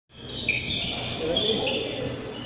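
Shoe soles squeaking on a wooden indoor court, several short, high squeaks overlapping, with voices low in the background and a hall echo.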